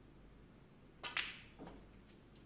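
Snooker shot: the cue tip clicks on the cue ball, and a split second later comes the louder, ringing click of the cue ball striking another ball. A softer knock follows about half a second later.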